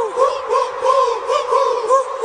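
Music: a high, sing-song melody of short arching notes repeated about three times a second.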